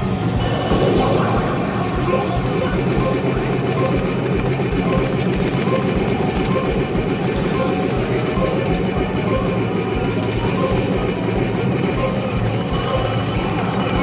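Game audio from a Hokuto no Ken Battle Medal pusher machine during its button-mashing attack bonus, over steady arcade din. The game's music and voices play, with a short high beep repeating at an even pace.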